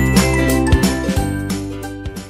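Light background music with a steady beat, fading out toward the end.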